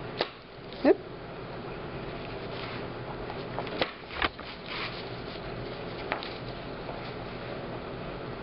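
A steady background hum, with a few short clicks and scrapes as a fabric-covered strip is worked through a tight hole in a journal cover with a slim pointed tool. The clicks come in a small cluster around the middle and once more a little later.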